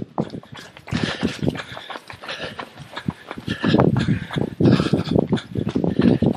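Several runners' footfalls on pavement in a quick, irregular patter, recorded on a smartphone carried by someone running with them, with handling and rumbling noise on the microphone that is heavier towards the middle.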